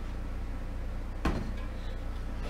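A single sharp knock a little over a second in, over a steady low hum.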